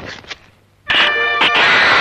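Dramatic soundtrack music strikes suddenly about a second in and holds a loud, sustained chord. A brief noisy rustle dies away just before it.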